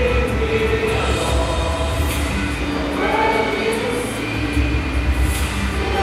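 A large group of students singing together in long, held notes, with a heavy low rumble underneath.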